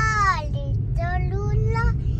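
A child singing in a high voice, a falling swoop followed by short sung phrases, over the steady low rumble of a car on the road.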